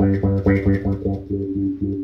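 Electric bass guitar played through a Mu-Tron III envelope filter in low-pass mode: a quick run of plucked notes repeated on one low pitch, each attack opening the filter in a short upward wah sweep. The filter follows the picking dynamics, so the sweep depends on how hard each note is plucked.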